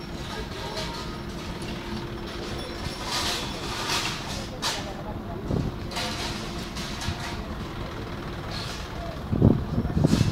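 Tracked bomb-disposal robot crawling over grass, its drive motors running with a steady hum under onlookers' voices. A heavy thump near the end.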